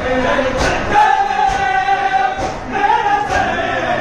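A crowd of men chanting together in unison, holding long notes, with a sharp beat a little under once a second.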